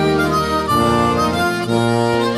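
Instrumental folk music, a harmonica playing the melody in a passage without singing, changing note every fraction of a second.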